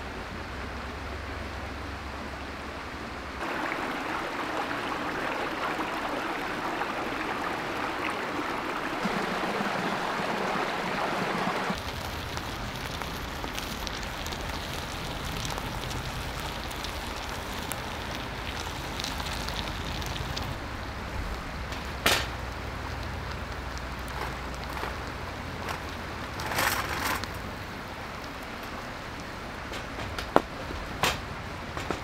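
Steady rushing of a rocky stream together with the open flame of a small wood gas stove, with a few sharp crackles from the fire; for several seconds the hiss is louder and brighter, starting and stopping abruptly.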